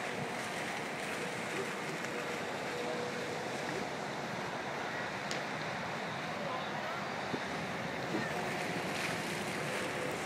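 Steady rushing noise of wind on the microphone, with faint voices in the background.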